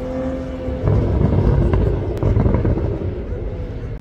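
Convertible sports car's engine and exhaust as it drives past: a steady droning note, then a louder low rumble from about a second in that fades away near the end.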